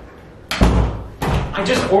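A door banging about half a second in, followed by a second, lighter thud; a man's voice starts near the end.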